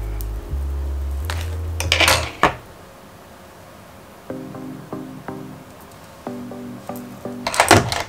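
Background music: sustained low bass notes for the first couple of seconds, with a brief hiss near two seconds in, then a run of short plucked notes from about four seconds in.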